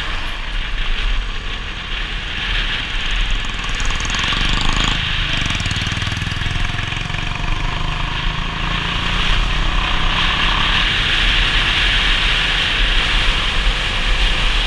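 A motorcycle on the move: wind rushing over the microphone with the engine running underneath, loud and steady. From about five seconds in, a steadier engine hum stands out for several seconds, then fades back into the wind.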